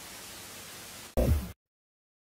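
Television static hiss, ending a little over a second in with a short, loud burst that drops in pitch, then cutting off suddenly.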